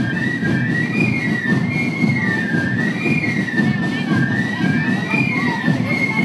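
A marching fife band (txilibitu) plays a march tune in unison. A high, shrill melody rises and falls slowly over a dense low rumble of the marching company.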